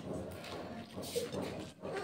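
Close-up eating sounds of a person chewing a mouthful of rice and curry, with a short faint voice-like sound about a second in.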